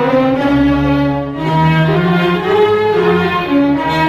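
Tunisian nawba music: an instrumental passage of bowed strings playing a sustained, flowing melody.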